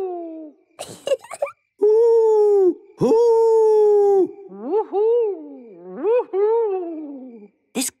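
Human voices imitating owl hoots. Long, level hoots are followed by shorter hoots that rise and fall in pitch, and the last one slides down.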